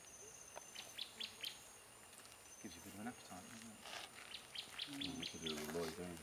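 A bird calling with short, sharp high notes in two quick runs, a few notes about a second in and a longer run of about eight near the end, over a steady high insect whine in the forest.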